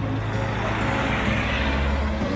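A car passing on the road, its tyre and engine noise swelling to a peak near the end, over background music.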